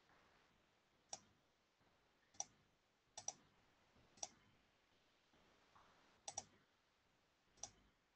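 Sparse computer mouse clicks, about eight in all, with two quick pairs like double-clicks, over near silence.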